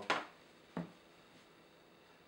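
Two brief knocks of kitchenware at the stove: a louder, ringing one just after the start and a short, softer one under a second later, as a container is set down and the skillet is handled.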